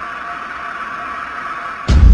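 Logo sting sound design: a steady hissing synthesized tone, then a sudden loud low boom of an explosion effect near the end.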